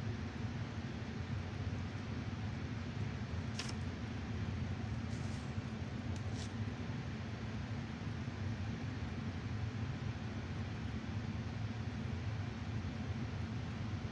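Steady low background hum with an even hiss above it, broken by a few faint clicks around the middle.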